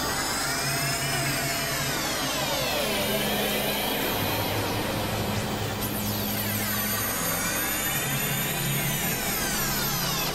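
Experimental electronic synthesizer drone music. Clusters of high tones sweep down and climb back up, with a second sweep starting about six seconds in, over low held drone notes that shift in pitch every few seconds.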